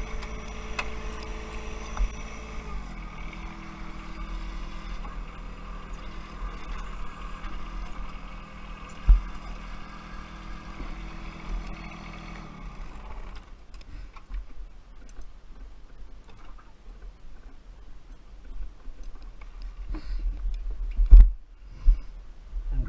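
John Deere 1023E compact tractor's three-cylinder diesel engine running as the tractor drives; its pitch steps down a few seconds in and the steady engine note ends about two-thirds of the way through. Scattered knocks follow, with a sharp knock near the end the loudest sound.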